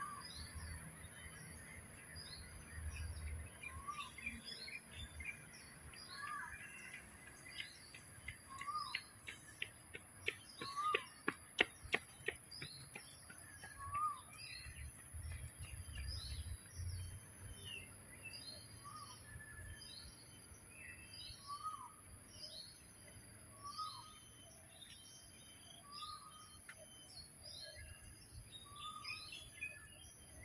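Birds calling outdoors: one bird repeats a short call about every two seconds while others chirp higher in between. About a third of the way in, a quick run of sharp taps is the loudest sound.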